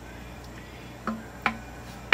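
Two light clicks about a second in, a third of a second apart, as a heated screwdriver tip is brought against a thick plastic bottle held in the hand, over a faint steady low hum.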